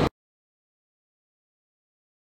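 The steady rushing noise of an indoor skydiving wind tunnel's airflow cuts off abruptly right at the start, leaving digital silence.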